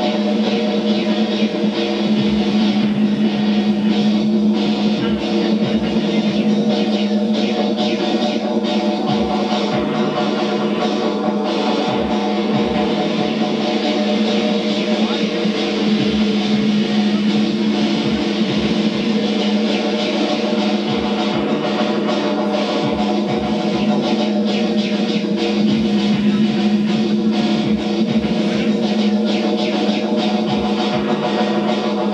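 A live band playing instrumental electronic rock: layered synthesizer and keyboard chords over a held low drone, with drum hits underneath.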